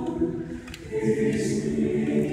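Mixed choir singing held chords. One chord fades about half a second in, and a new one begins about a second in.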